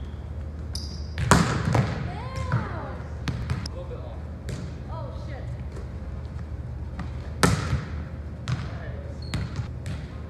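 A volleyball being struck and bouncing on a hardwood gym floor: two loud smacks, about a second in and again about seven and a half seconds in, with smaller knocks of the ball between, ringing in a large gym.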